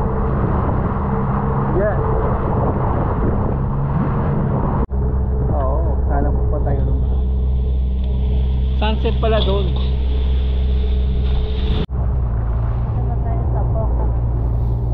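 Steady drone of a motorized outrigger boat's engine running under way, with indistinct voices in the middle. The sound cuts out for an instant twice, about five and twelve seconds in, and the engine tone shifts after each break.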